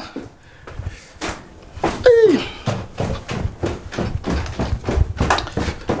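Footsteps going down indoor stairs with handheld-camera handling thumps, a quick run of knocks from about two seconds in. A brief sound that slides down in pitch comes just before the knocks start.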